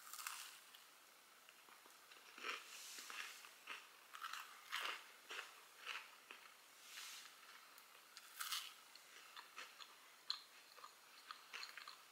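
A person biting into and chewing a freshly baked chocolate chip cookie topped with a pumpkin sugar cookie: faint, irregular crunches and mouth sounds.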